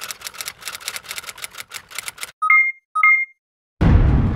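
Keyboard typing sound effect: a quick, even run of key clicks, about seven a second, then two short electronic beeps about half a second apart. A sudden deep boom, the loudest sound, hits just before the end.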